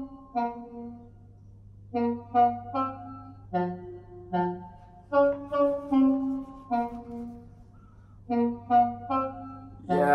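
A G-minor house melody loop from a sample pack, a reedy, sax-like lead of short, clipped notes in groups of two to four, playing back in Ableton Live with re-pitch on, so its pitch moves with the changed tempo.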